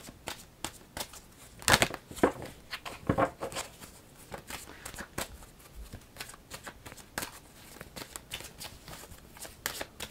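A tarot deck being shuffled by hand: a run of soft card flicks and taps, with a few louder snaps in the first few seconds.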